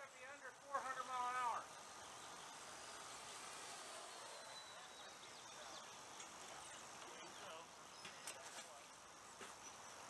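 A brief voice about a second in, then faint steady outdoor ambience with a high, thin hiss.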